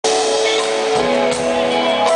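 Live R&B band playing sustained chords with guitar, the chord changing about a second in.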